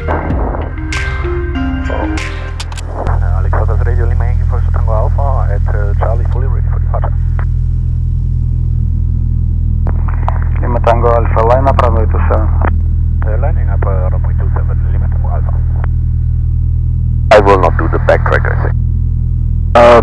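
Light aircraft's piston engine droning inside the cabin, a steady low hum that steps up in loudness about three seconds in and holds. Voices talk over it in several short stretches, and music plays in the first few seconds.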